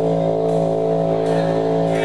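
Live rock band holding one droning chord on guitars and bass, with faint cymbal strokes about every 0.8 seconds.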